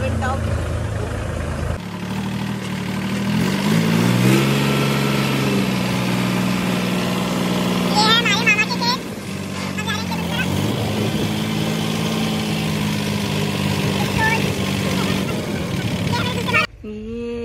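Diesel tractor engine running steadily under way, heard from the seat beside the driver. Its pitch shifts a few times as the engine speed changes.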